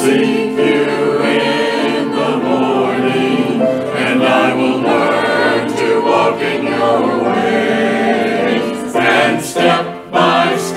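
Mixed church choir of men and women singing an anthem in sustained parts, with a brief break between phrases near the end.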